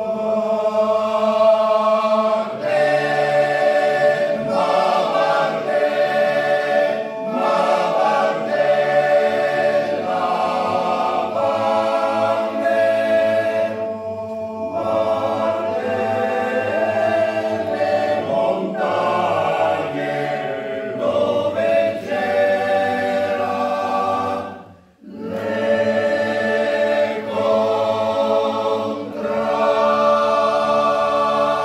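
Choir singing a cappella, holding chords in long phrases broken by short breaths, with a brief full stop about 25 seconds in before the singing resumes.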